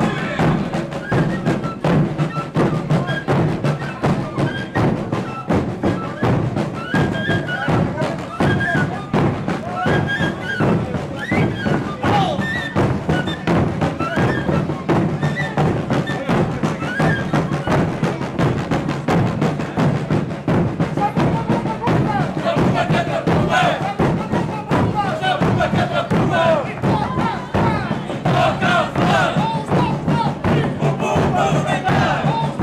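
A group of large bass drums (bombos) beaten together in a fast, steady rhythm, with crowd voices over them that grow more prominent near the end.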